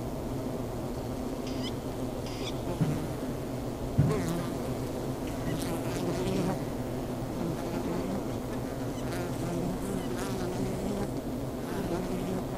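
Honeybees buzzing in flight around wooden hives: a steady, dense hum of many bees, swelling briefly as one passes close about three and again about four seconds in.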